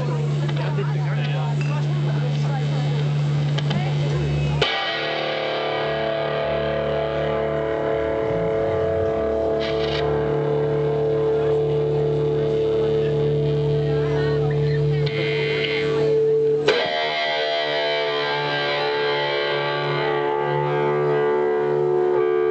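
Electric guitar run through effects pedals, holding layered sustained drone tones that change abruptly to new pitches twice, about four and a half seconds in and again around sixteen and a half seconds in.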